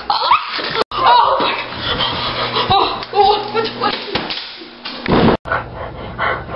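Young boys crying out and gasping in a scuffle, with bumps and rustling. The sound cuts out for an instant twice.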